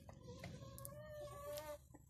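A hen giving one long, slightly wavering call that starts about half a second in and stops shortly before the end, with a few short clicks around it.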